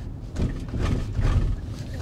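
Low, steady road rumble inside an electric car's cabin as it rolls slowly into a turn, with faint, indistinct sounds over it.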